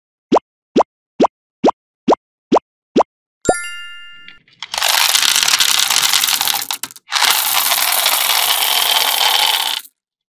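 A quick run of short, rising 'plop' sound effects, about two a second, as M&M candies are set down one by one, then a chime. After that a loud, dense rattling rush of hard candy-coated M&Ms poured from a plastic cup into a hollow, in two pours with a short break between them.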